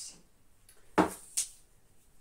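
Handling noise: two short clicks about a second in, the second a little after and softer, over an otherwise quiet room.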